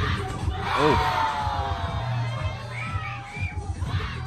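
A crowd of children and teenagers shouting and cheering on a dancer, many voices at once, with one long falling yell about a second in. A bass-heavy music beat runs underneath.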